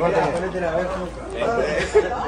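Speech only: voices talking in the clip, over background chatter.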